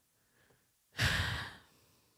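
A woman's sigh: one breath out close to the microphone about a second in, fading away over about half a second.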